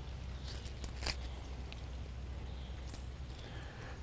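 A steady low background hum with a few faint, short rustles and clicks from cut dahlia stems and leaves being handled.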